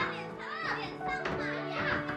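Two young girls' voices, playful cries as they chase each other, over background music with steady held notes.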